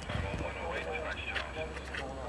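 Indistinct voices of people talking at a distance, with a few short knocks in the first half-second, over a steady low hum.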